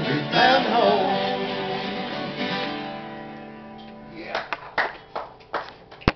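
Two acoustic guitars and a voice ending a bluegrass song: a last sung note about a second in, then the final guitar chord ringing and fading away over a few seconds. A few scattered sharp knocks sound near the end.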